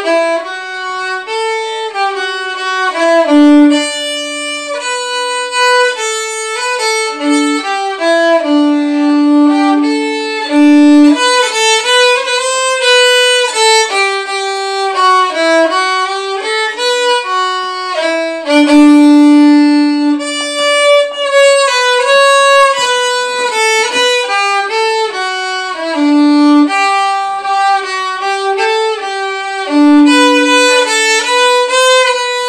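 Solo violin playing a Christmas song melody, moving note to note, with long held low notes about nine and nineteen seconds in.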